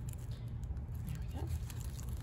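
Steady low rumble, with a few faint light ticks as a gloved hand handles a freshly cut cactus stem.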